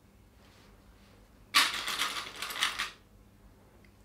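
Small plastic sewing clips rattling and clicking for about a second and a half in the middle, as they are handled and clipped onto the fabric.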